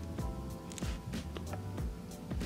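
Background music with held tones, over light irregular clicks of a diamond painting pen pressing drills onto the canvas.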